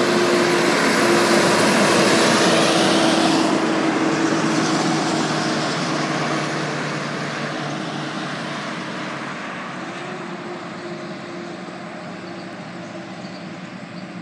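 Heavy-haul diesel semi truck pulling a loaded lowboy trailer driving past close by, its engine drone and tyre noise loudest about two seconds in, then fading steadily as it moves off.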